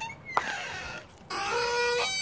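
A dog whining: a short falling whine, then a longer, steady high whine in the second half.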